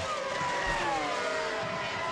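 Formula One race cars' 3-litre V10 engines running at high revs, their high-pitched note gliding slowly down in pitch.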